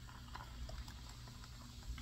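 Faint mouth sounds of someone chewing food close to the microphone: scattered soft wet clicks over a low steady hum.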